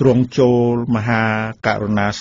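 A man's voice reciting in a chanted, sing-song Khmer style, holding one long steady note about halfway through, typical of a Buddhist sermon being intoned.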